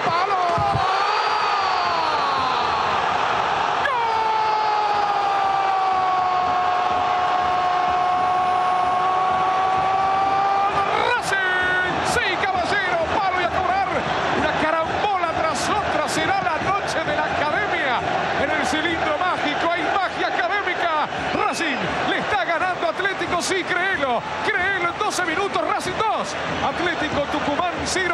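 A Spanish-speaking football commentator's long drawn-out goal cry, a single held note of about seven seconds that glides up at its end, after a brief opening shout; it is followed by fast, excited commentary over the stadium crowd.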